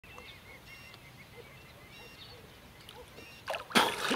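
A person coming up out of the water with a sudden loud splash about three and a half seconds in, after a few seconds of faint sound with small bird chirps.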